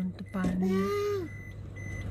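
Short electronic beeps at one steady high pitch, sounding at the start and twice near the end, over a low steady hum. A voice is drawn out in a falling tone about half a second in.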